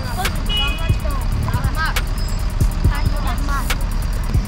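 Steady low rumble of city street traffic, with brief fragments of boys' voices and a few sharp clicks.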